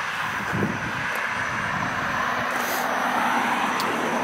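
Motor vehicle noise: a steady rushing sound that swells slowly.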